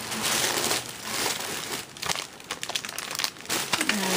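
Plastic packaging of craft supplies crinkling as it is handled, with a run of light clicks and taps in the second half.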